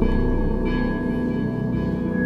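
Eerie ambient background music: layered sustained tones with a bell-like ring. It swells suddenly at the start and holds a high steady note.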